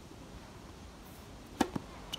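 Two sharp knocks of a tennis ball close together, about one and a half seconds in, the first much louder than the second.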